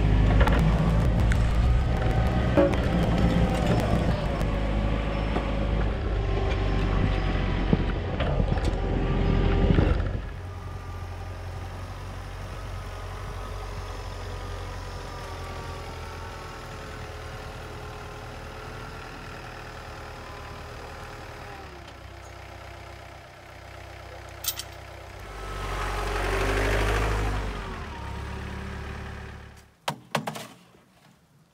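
John Deere 4044R compact tractor's diesel engine running close by while it moves, with scattered knocks and rattles, for about the first ten seconds. It cuts off to a much quieter stretch of faint held tones, and a louder sound swells up and fades again near the end.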